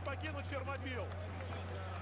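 Faint voices in a fight arena, clearest in the first second, over a steady low hum.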